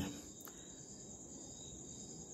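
Faint, steady high-pitched chirring of insects, with one light click about a quarter of the way in.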